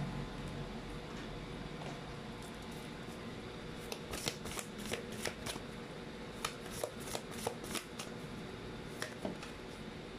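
A deck of oracle cards being shuffled by hand. Soft sliding is followed, from about four seconds in, by a run of quick, irregular card clicks and flicks that stops shortly before the end.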